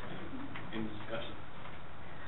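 Indistinct voices murmuring in a meeting room, with short low fragments of talk over a steady background hiss.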